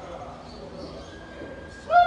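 Low murmur of a wrestling hall, then near the end a loud, drawn-out shout that starts high and falls in pitch.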